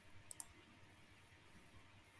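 A single computer mouse click, with button press and release heard in quick succession about a third of a second in, against near-silent room tone.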